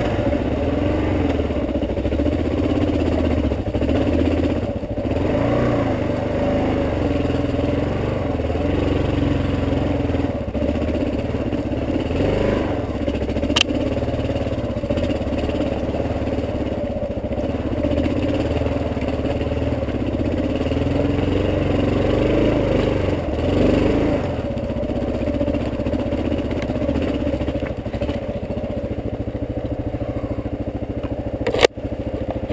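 Dual-sport motorcycle engine running under load, its revs rising and falling every second or two with the throttle. One sharp click about fourteen seconds in.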